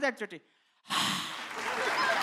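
A man's line of speech trails off, and after a short pause a studio audience breaks into laughter and applause, a steady noisy wash that keeps on.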